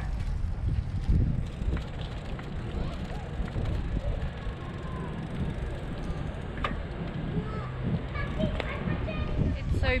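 Wind buffeting the camera microphone during a bike ride, a steady low rumble throughout, with faint voices in the last couple of seconds.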